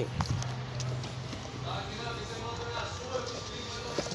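Light clicks and knocks of a folding third-row SUV seat being handled and pushed toward its latch, with faint voices in the background.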